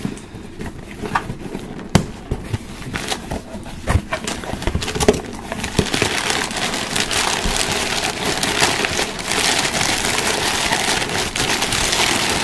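A cardboard box handled with a few sharp knocks, then paper gift wrap rustling and crinkling continuously from about halfway through as hands dig through it.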